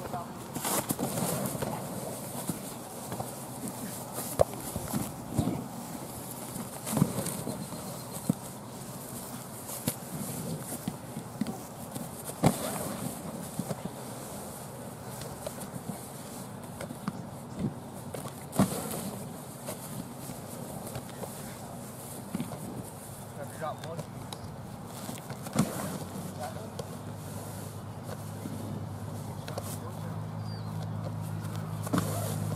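Distant, indistinct voices of players training on a field, with scattered sharp thuds and smacks from the drills.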